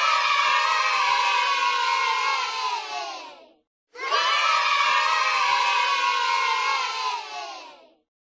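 A crowd of children cheering and shouting, played as a cheering sound effect of about four seconds that comes twice with a brief gap between.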